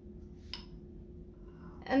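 Quiet kitchen room tone with a steady low hum and one faint light click about half a second in.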